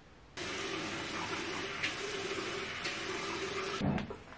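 Bathroom sink tap running: a steady rush of water with a low hum in it, turned on suddenly just after the start and shut off near the end with a short low thud.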